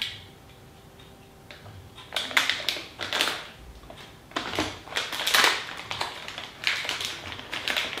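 Small screws and parts of a USB charging panel kit being handled on a wooden worktop: irregular clicks, rattles and rustles, starting about two seconds in.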